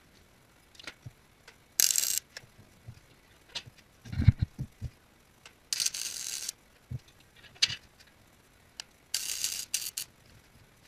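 Wire-feed (MIG) welder running three short welds on steel, each a crackling burst under a second long, about two, six and nine seconds in. A few low knocks around the middle and scattered clicks come in between.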